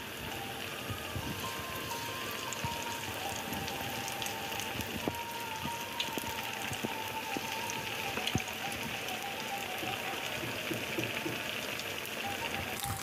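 Hot oil sizzling around marinated chicken strips deep-frying in a wok, a steady hiss with scattered crackles and pops.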